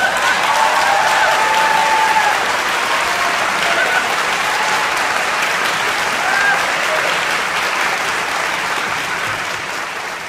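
Audience applauding at the end of a song, with a few voices cheering over the clapping; the applause begins to die down near the end.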